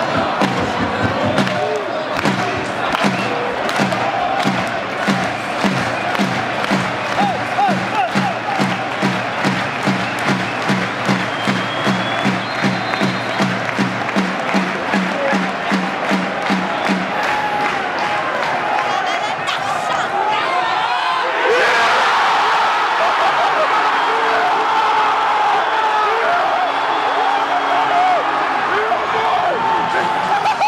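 Football stadium crowd chanting over a steady bass drum beating about twice a second. The drum stops about two-thirds of the way through. A few seconds later the crowd suddenly breaks into a loud cheer.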